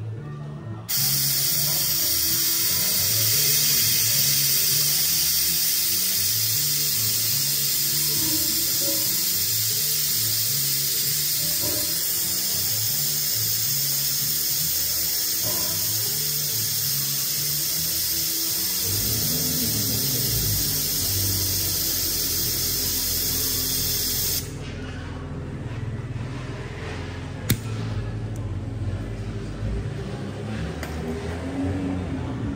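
Compressed air hissing through a venturi vacuum coolant bleeder as it pulls a vacuum on the BMW F90 M5's cooling system. A loud, steady, high hiss starts abruptly about a second in and is shut off abruptly a few seconds before the end, all over background music.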